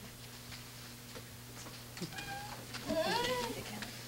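A high-pitched voice making two short wordless sounds: a brief held note about halfway through, then a longer one that rises and falls, over a steady low hum.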